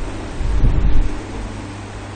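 A loud, low rumbling thump about half a second in, lasting about half a second, over a steady low hum and hiss of microphone background noise.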